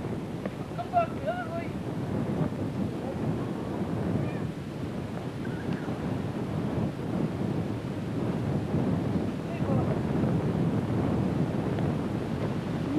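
Wind buffeting the camcorder microphone, a steady rumbling hiss, with a brief voice calling out about a second in.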